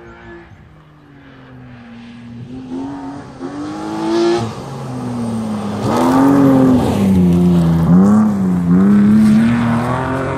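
Rally car on a gravel road, approaching and passing close by, its engine revving up and dropping again and again as it is driven hard through the corner. It grows louder until it reaches full volume about six seconds in, with loose gravel sprayed and crunching under the tyres.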